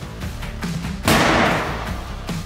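Background rock music with a steady guitar beat, cut about a second in by a sudden loud bang: a burst of noise that fades away over under a second.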